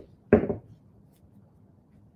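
Quiet room tone, with one short sound about a third of a second in that fades within a quarter second.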